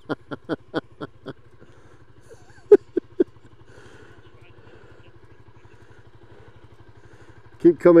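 A motorbike engine idling steadily, with a person laughing in short bursts at the start and three short, sharp sounds about three seconds in.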